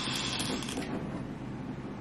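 Small plastic balls rattling down the twisted-tube timer of a 5 Second Rule game, thinning out about a second in.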